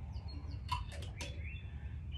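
Small birds chirping in short repeated calls over a steady low outdoor rumble, with a few quick clicks around the middle.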